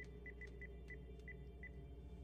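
Landline phone handset keypad beeping as a number is dialed: seven short high beeps, all at the same pitch, at an uneven pace.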